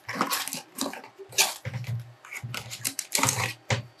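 Cardboard tablet packaging and its paper inserts being handled and pulled apart on a table: irregular rustling, scraping and light knocks.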